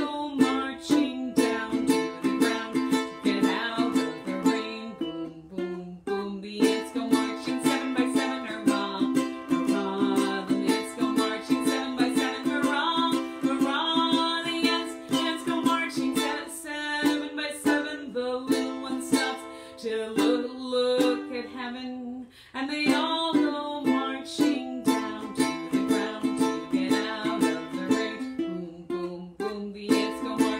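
Ukulele strummed and picked in an instrumental song, with quick, even strokes that pause briefly twice.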